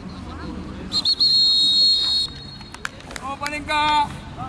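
Referee's whistle: a quick double chirp running straight into one long, steady blast of just over a second. Players shout near the end.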